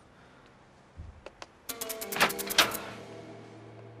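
A shop door's hanging bell jingling in a quick cluster of strikes that ring on briefly, with a few light clicks just before. Then a low steady drone of background music starts.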